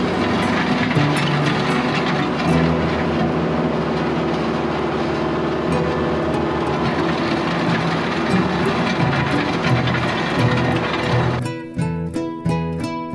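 New Holland WorkMaster 55 tractor running steadily while its box blade scrapes the gravel road, with guitar music playing underneath. About eleven and a half seconds in, the machine noise cuts out and only the acoustic guitar music remains.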